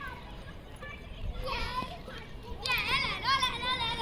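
Children shouting and calling to one another while they play, with a short high call about a second and a half in and a run of high, rising and falling calls in the second half.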